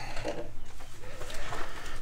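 Faint bird calls over a low, steady background rumble.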